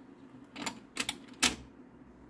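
1972 Magnavox record changer cycling: a few sharp mechanical clicks and clunks, the loudest about one and a half seconds in, over a faint steady low hum.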